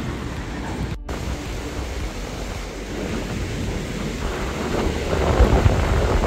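Wind buffeting a GoPro's microphone with a low rumble, over the wash of sea surf; the rumble grows louder about five seconds in. The sound cuts out for a moment about a second in.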